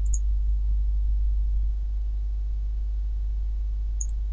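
Steady low electrical hum on the recording, getting slightly quieter a little under two seconds in. A short, high computer-mouse click comes just after the start and another at the very end.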